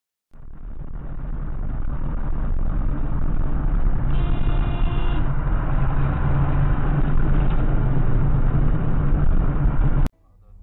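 Road and engine rumble inside a moving car, picked up by a dash-cam microphone, building in level over the first couple of seconds. About four seconds in, a Honda Civic's horn sounds once as a single steady tone lasting about a second.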